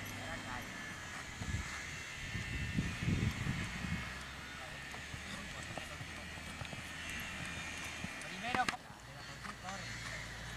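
A person's voice, indistinct, calling out briefly a few times over a steady background hum, with one short higher call near the end.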